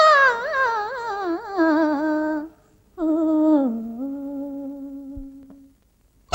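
A woman humming a wordless melody in two slow phrases, each winding downward with quick ornaments and settling on a long, low held note, with a short break between them.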